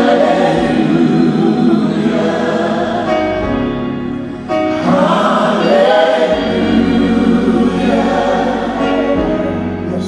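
Live gospel singing: a choir and lead vocalists sing long, slow, held phrases with music behind them. The sound dips briefly about four seconds in, then a new phrase swells up.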